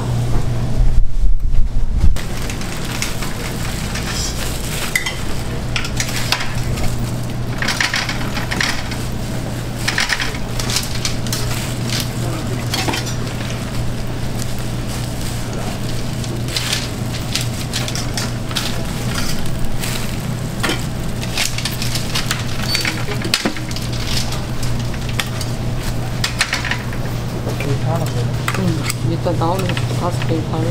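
Waffle-making at a stall: a steady low machine hum under repeated clinks and clatter of metal tongs and utensils on trays and wire racks, with sizzling from the waffle iron. A loud low bump comes in the first two seconds.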